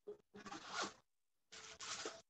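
Three short bursts of scraping, rustling noise, heard through a video call and cut off sharply into silence between bursts.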